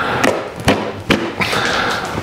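A staple-removing tool prying pneumatic-gun staples and old upholstery fabric off a wooden chair seat rail: four sharp knocks and clicks about half a second apart, then a short rasping pull near the end. The staples are hard to take out.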